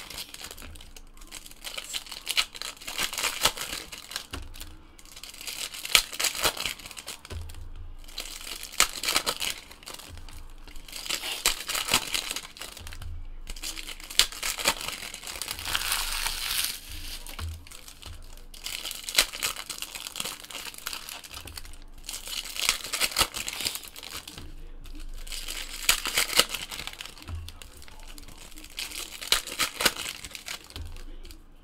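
Trading-card pack wrappers crinkling and tearing as they are ripped open by hand, in repeated bursts a few seconds apart with quieter handling between.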